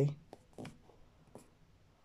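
A woman's spoken sentence ends, then a few faint short clicks come within the first second and a half in an otherwise quiet room.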